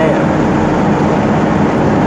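Old Mercedes-Benz 1113 truck's diesel engine running steadily at cruising speed, mixed with tyre and road noise, heard from inside the cab.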